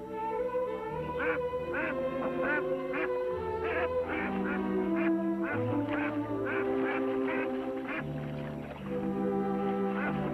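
Canada goose honking in short repeated calls, about two a second, over background music with long held notes.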